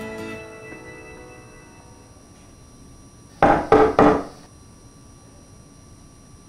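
An acoustic guitar piece fades out. Then, about three and a half seconds in, come three quick, loud knocks on a wooden door.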